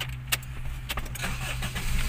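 Car being started with the ignition key: a few sharp clicks and the key ring jangling as the key is turned, then the engine cranking and catching near the end.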